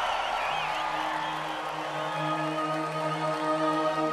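Live concert intro: held synthesizer chord coming in about half a second in and sustaining, while audience whistles and cheers die away.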